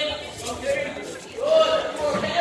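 Only speech: a man's voice talking in a large hall.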